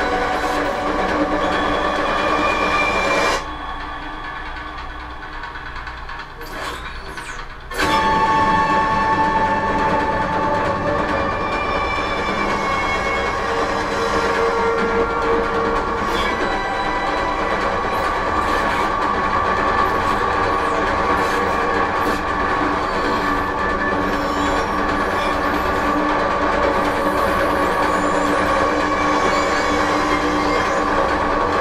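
Playback of an electroacoustic composition over loudspeakers: a dense, continuous texture of noise and sustained tones. It thins to a quieter passage about three seconds in and returns at full strength about eight seconds in.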